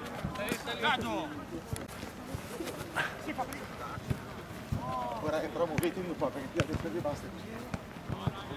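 Football players shouting to each other across an outdoor pitch, with the sharp thud of a football being kicked several times.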